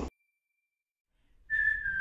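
About a second of dead silence, then a whistled melody starts about one and a half seconds in, a held note that slides slightly downward: the opening of a background music track with whistling over a light accompaniment.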